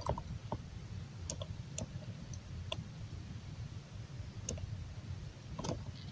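A few faint, scattered computer mouse clicks against low steady room noise, as the timeline's keyframes are selected on screen.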